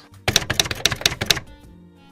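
A fast run of about a dozen sharp clicks lasting about a second, like typewriter keys, used as a sound effect under a meme clip.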